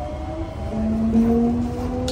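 C151A MRT train's traction motors whining with slowly rising pitch as the train gathers speed, over the low rumble of the moving car.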